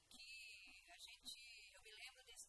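Only speech: a woman talking into a handheld microphone, faint and thin-sounding.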